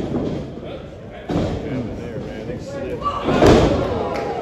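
A wrestler's body slamming onto the wrestling ring, the ring mat and boards booming loudest about three and a half seconds in after lighter thuds earlier, over crowd voices.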